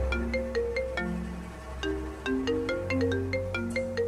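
An iPhone ringing with an incoming call: a ringtone melody of short struck notes repeating over and over, over a low droning music bed.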